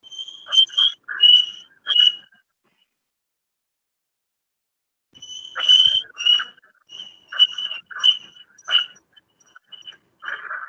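Short, repeated animal calls, each a high note with a rasping edge. About four come in the first two seconds, then after a pause of nearly three seconds about seven more follow. They are picked up by an open microphone on a video call, which cuts to dead silence between calls.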